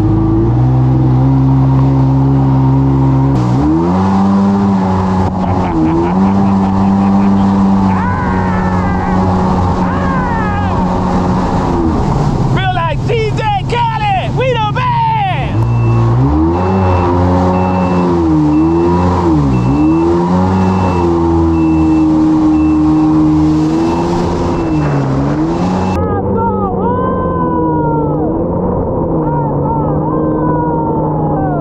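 Jet ski engine running at speed, its pitch rising and falling with the throttle. About twelve seconds in it drops away for a few seconds, then revs back up.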